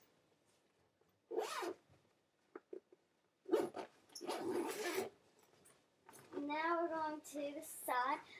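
Zipper on a Vera Bradley backpack being pulled in rasping runs: a short one about a second and a half in, and a longer one from about three and a half to five seconds in. A child's voice is heard near the end.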